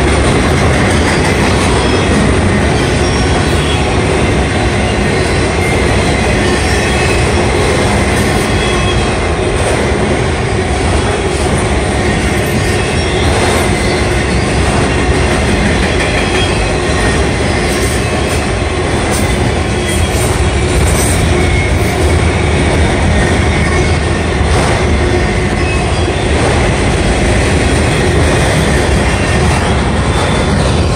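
Norfolk Southern freight train's cars rolling past close by: flatcars loaded with truck frames, then autorack cars, their steel wheels running steadily over the rails. The sound is loud and continuous, with no let-up.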